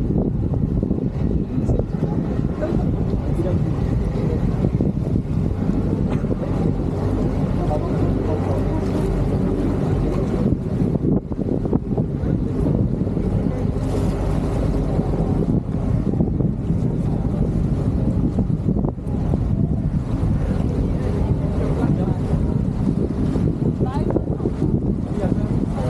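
Wind buffeting the microphone over the steady wash of choppy water against a stone quay, with people talking nearby.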